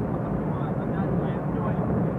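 Steady road and engine noise inside the cabin of a moving car: an even low drone with no change in pitch.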